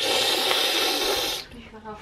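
A loud, steady hiss lasting about a second and a half that stops abruptly.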